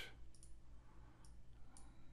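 Near silence with a few faint clicks of a computer mouse as the fill handle is dragged and released.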